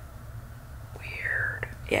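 A woman's breathy, whispered vocal sound, a drawn-out unvoiced vowel sliding down about a second in, over a low steady room hum.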